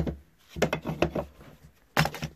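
Small parts being handled and set against a wooden board: a sharp knock at the start, a run of light clicks and rubbing in the middle, and another sharp knock at the end.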